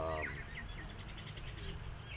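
Faint bird chirps and a short, quick trill in the background, over low steady outdoor background noise.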